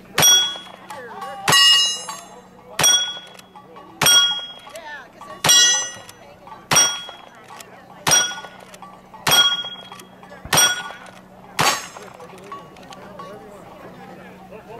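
Ten gunshots fired at a steady pace, a little over a second apart, each answered by the ring of a hit steel target.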